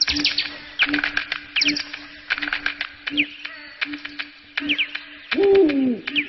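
Birds chirping in quick falling notes among many sharp clicks, over a low note pulsing a bit faster than once a second. Near the end a louder, lower call slides down in pitch.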